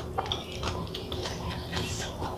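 A metal spoon scraping and clicking lightly against a ceramic bowl while scooping up food: a few faint, irregular small clicks.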